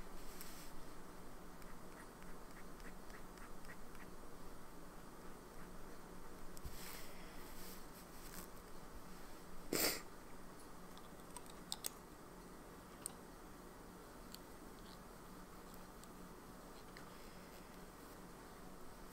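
Faint handling noises of a fountain pen and paper: light clicks and brief rustles, the loudest a short rustle about ten seconds in. After that only faint room noise with a few small ticks.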